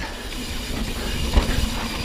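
Steady rumble and hiss of a 2020 Ibis Ripley mountain bike's tyres rolling fast over dirt singletrack, with a couple of low thumps about one and a half seconds in.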